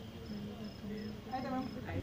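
An insect chirping: a thin, high-pitched note pulsing steadily about three times a second.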